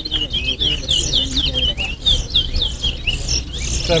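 Caged towa towa (chestnut-bellied seed finch) singing its song competitively: a fast, continuous run of short, sweeping chirps, one tumbling after another. A man calls out the song count right at the end.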